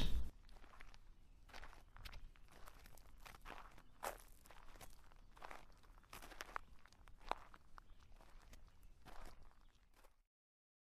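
Faint, irregular crunches and clicks, roughly one a second.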